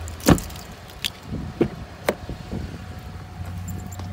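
A 2018 GMC Canyon pickup's door shutting with a sharp thump just after the start, then a few lighter clicks and knocks as the front door is opened and someone climbs into the cab.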